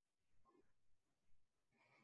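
Near silence on a video-call audio feed, with a few very faint, brief sounds in the first half.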